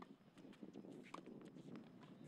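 Faint outdoor court ambience with two tennis ball strikes about a second apart, the second a short ping.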